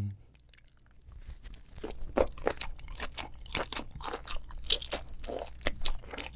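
Close-miked chewing of octopus: dense, irregular wet crunching and clicking that starts about a second in and carries on steadily.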